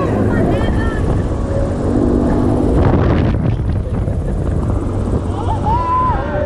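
Steady wind rush buffeting the microphone of a rider on a Mondial Turbine swinging thrill ride in motion. Riders' voices call out briefly near the start and again near the end.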